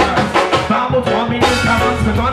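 Live reggae band music with no vocals: drum kit keeping a steady beat of about three strokes a second under guitar and sustained keyboard-like tones.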